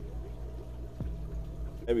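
Aquarium water stirring and trickling as a hand lets a small peacock cichlid go under the surface, over a steady low hum. A light click about a second in.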